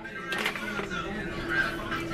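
Faint voices and music in the background over a steady low hum, with no clear cooking sound.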